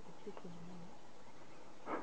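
A man's brief low murmur, a hum-like 'mm', in the first second, then a short breathy sound near the end, over a faint steady hiss.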